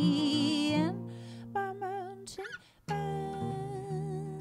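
Live acoustic folk song: several voices sing held notes in harmony over acoustic guitar. The voices break off about a second in, one voice sings a short line, and after a brief near-silent pause held vocal notes return over picked acoustic guitar just before the three-second mark.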